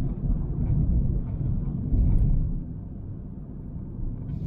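Low, uneven rumble of a car driving along a city street, heard through its dashcam: road and tyre noise, louder for the first couple of seconds and then easing off.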